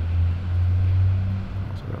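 A loud, steady low rumble that fades away about a second and a half in, with a man's voice starting just before the end.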